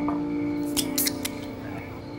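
A quick cluster of sharp metallic clicks and crinkles about a second in, from a thin aluminium drink can being gripped and handled at the table, over soft background music with held notes.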